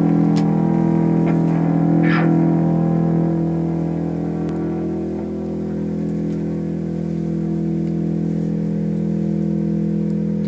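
Distorted electric guitar holding one sustained, droning chord through an amplifier, dipping slightly in level about halfway through.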